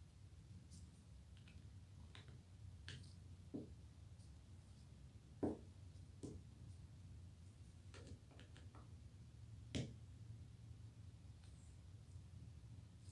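Faint, scattered clicks and taps of small metal musket parts being handled and fitted by gloved hands, over a low steady hum. Two louder clicks come about halfway through and near the end.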